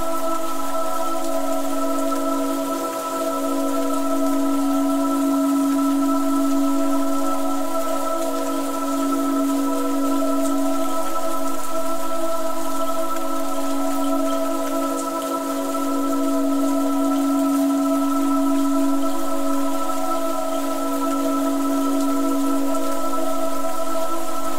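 Slow ambient music of sustained, barely changing chords over the steady hiss of rainfall.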